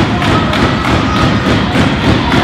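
Rapid, irregular thuds and knocks, typical of wrestlers moving and landing on a wrestling ring's canvas and boards.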